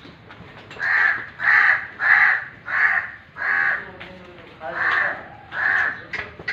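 A crow cawing: seven harsh calls, a run of five about half a second apart, a short pause, then two more.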